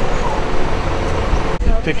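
Outdoor street ambience: a steady rumble of traffic mixed with background voices, which cuts off abruptly about one and a half seconds in, followed by a man starting to speak.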